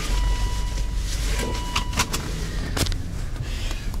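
Inside a Volvo XC90 with the engine running, a steady seatbelt-reminder tone sounds for the unfastened belt and stops a little under two seconds in. Several sharp clicks follow as the belt is buckled.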